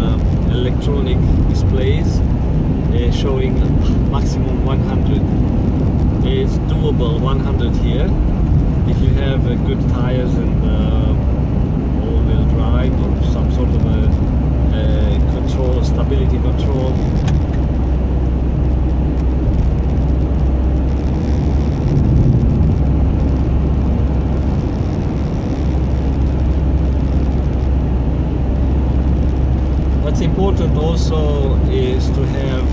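Steady low road and engine rumble heard inside a 4x4 car driving on winter tyres over packed snow and ice. An indistinct voice comes and goes in the first half.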